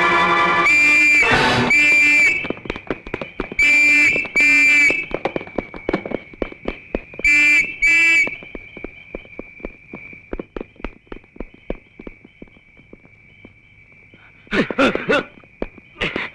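Suspense film background score: three pairs of loud brass-like stabs in the first eight seconds, then a thin held high note with scattered quick ticks beneath it, and a short flurry near the end.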